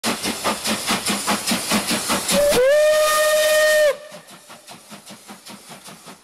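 Steam locomotive working hard, its exhaust chuffing in a quick, even beat of about five a second. About halfway through, the whistle sounds one held blast of about a second and a half, the loudest part, which cuts off suddenly. The chuffing then carries on much quieter.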